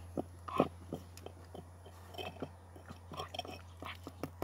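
A dog chewing on a small bone, a run of irregular crunches and clicks.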